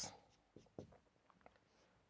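Faint scratching of a marker pen writing on a whiteboard, a few short strokes.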